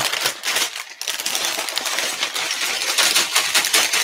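Plastic Lego bricks clattering out of a plastic bag onto a desk, a dense rattle of small clicks that picks up about a second in.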